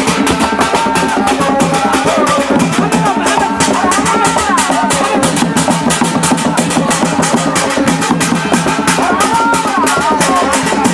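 Drum-led dance music: drums beaten in a fast, dense rhythm, with a melody that rises and falls above them.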